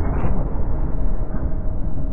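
A loud, dense low rumble with no clear pitch, and a faint steady tone coming in a little past halfway.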